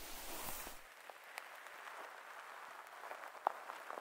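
Close-up rustling of cloth and a body shifting position as the listener turns over onto the other side, recorded binaurally. It is fullest for about the first second, then settles to a faint hiss with a few small crackles.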